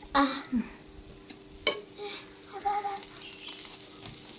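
Faint sizzling of butter melting on a hot flat griddle pan (tawa), the crackle growing towards the end, with one short sharp knock a little before halfway.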